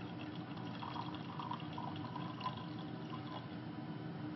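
Faint trickle of solution poured slowly from one glass beaker into another: careful decanting, the liquid drawn off so the silver crystals stay at the bottom. Small soft splashes and tinkles come in the first half, over a steady low room hum.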